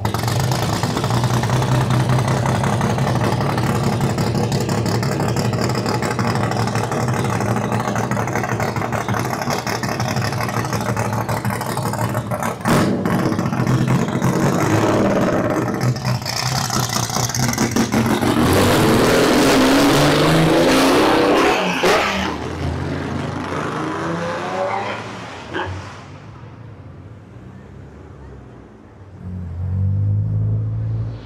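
Chevrolet Opala coupe race car's engine running loudly at a steady idle, then revving up about two-thirds of the way in as it pulls away, the sound fading out after. Near the end another car's engine swells as it comes by.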